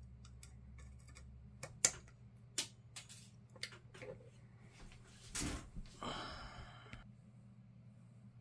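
Scattered light clicks and taps of a small screwdriver against the die-cast metal frame and parts of a cap gun, the sharpest click about two seconds in. This is followed by a brief rough scraping or rustling noise lasting about a second, from about six seconds in.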